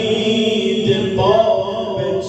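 A man's solo voice chanting a Shia devotional eulogy (maddahi) into a microphone, holding long melismatic notes. A little past the middle the voice steps up to a higher held note.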